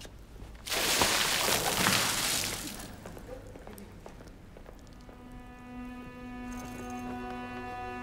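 A sudden rush of water pouring and splashing down onto a raincoat, lasting about two seconds. Later a sustained string chord from background music comes in.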